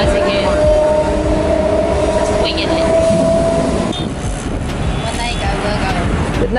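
Passenger train carriage running, heard from inside: a steady rumble with a held whine. At about four seconds it cuts to road traffic.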